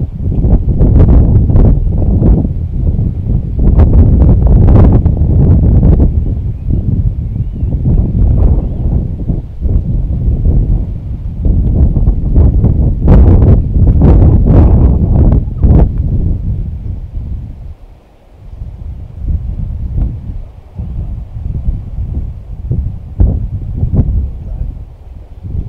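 Heavy wind buffeting the microphone: a loud, gusting low rumble that dies down briefly about eighteen seconds in, then comes back weaker.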